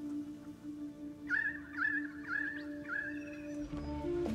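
Soft, sustained background music, over which four short wavering whimpers, like a small animal's, come about half a second apart in the middle.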